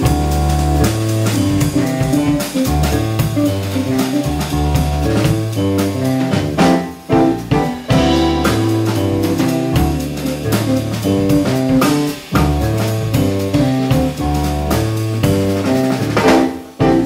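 Jazz band playing live: an electric bass guitar plays a prominent low line under a drum kit and electric guitar, with two brief drops in the playing about 7 and 12 seconds in.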